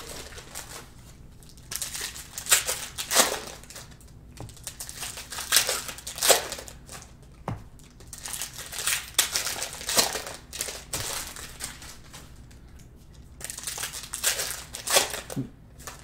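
Cellophane wrappers of Panini Prizm cello packs crinkling as the packs are torn open and the cards handled, in irregular bursts.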